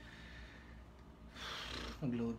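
Low room hum, then about a second and a half in, a breathy exhale close to the microphone.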